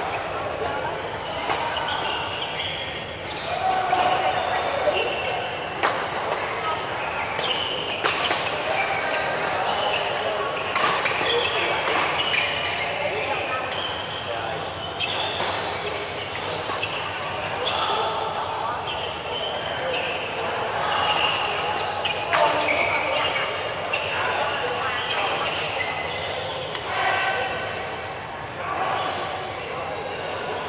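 Badminton shuttlecock being struck by rackets during a doubles rally, sharp knocks at irregular intervals, with players' footfalls and chatter echoing in a large hall.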